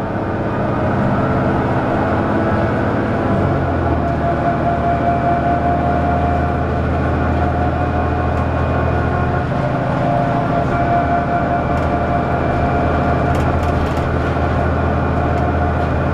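A 2002 Neoplan AN440LF transit bus on the move, heard from inside the passenger cabin: its Cummins ISL diesel engine and Allison automatic transmission give a steady drone. A thin whine joins about four seconds in, drops out for a few seconds midway, then returns, with a few light rattles near the end.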